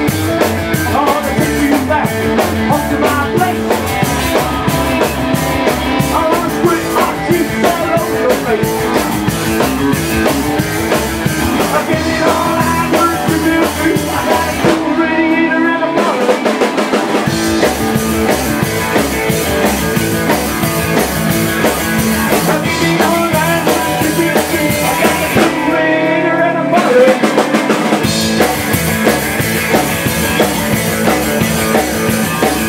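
Live rockabilly trio playing an instrumental passage: orange hollow-body electric guitar with a Bigsby vibrato over upright double bass and drum kit. About halfway and again near the end, the bass and drums drop out for a second or two while the guitar carries on.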